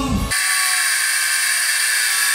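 Angle grinder cutting into metal: a steady, loud, high-pitched grinding that starts abruptly about a third of a second in, right after a man's singing breaks off.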